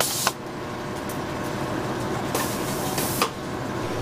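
Chocolate tempering machine running with a steady mechanical hum, broken by three short bursts of hiss, one right at the start and two near the end.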